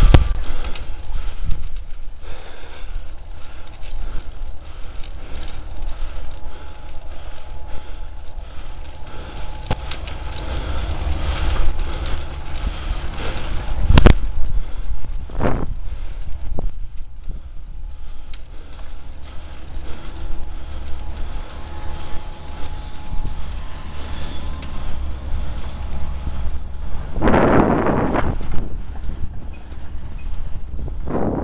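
Bicycle jolting over a rough, broken tarmac path: constant rattling and knocking from the bike and its mounted camera, with wind rumble on the microphone. A single sharp knock, the loudest sound, comes about halfway through, and a brief louder rush of noise comes near the end.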